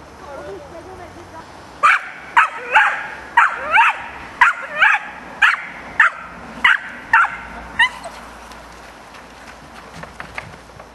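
A dog barking about a dozen times in quick succession, roughly two sharp, high barks a second, from about two seconds in until near the end.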